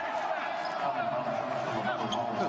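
Basketball arena ambience: steady crowd murmur, with a basketball bouncing on the hardwood court.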